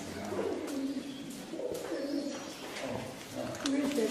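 Pigeons cooing in a series of low, gliding calls, with indistinct voices mixed in.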